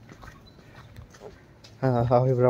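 Faint, steady background noise with no distinct event, then a man begins speaking near the end.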